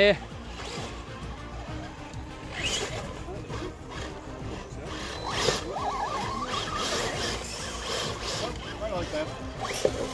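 Electric motors and gearboxes of several RC rock crawlers whining as the trucks crawl over dirt and sticks, with a rising whine about halfway through as one is given more throttle.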